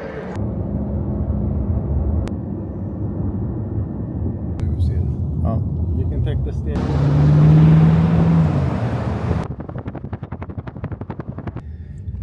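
Low rumble of a car ride through traffic, cut together from several short pieces that change abruptly. It swells to its loudest about two thirds through, with a steady low drone, and ends with a fast, even ticking for the last couple of seconds.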